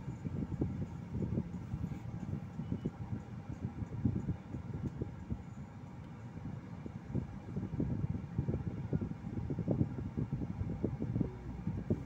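Car cabin noise while creeping forward in slow traffic: a low rumble with many irregular short knocks, dipping briefly about halfway through.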